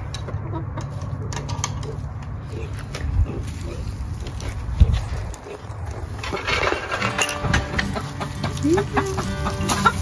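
Domestic hens clucking, with the calls coming thicker from about six and a half seconds in. Under them runs a steady low rumble, and a single sharp knock comes about five seconds in.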